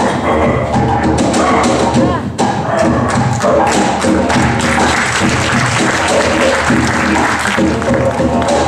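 Live acoustic music: a steady low drone under quick percussive taps and knocks from hand percussion.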